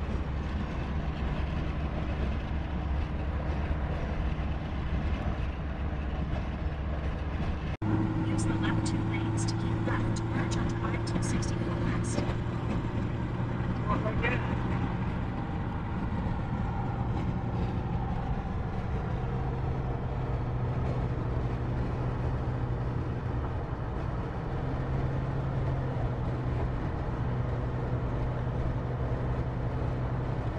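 Car cabin noise while driving at highway speed: a steady low drone of engine and tyres with a faint hum. The sound changes abruptly about eight seconds in.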